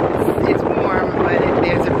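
Wind buffeting a phone microphone: a steady, loud rushing rumble, with faint voices of people farther off.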